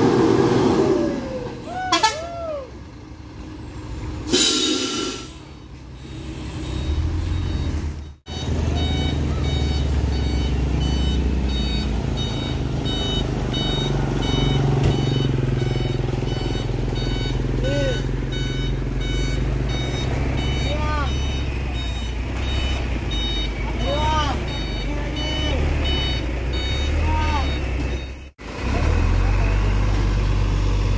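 Heavy tanker truck's diesel engine running low and steady as it crawls past close by, with an electronic beeper repeating fast high beeps over it.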